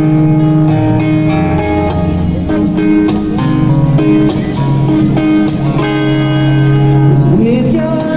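Live band music over a PA system: a strummed acoustic guitar with sung vocals.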